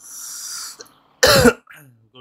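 A man's hissy breath, then one loud cough about a second and a quarter in.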